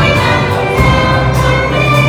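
Youth choir singing with a youth orchestra of strings and brass accompanying, in a live performance.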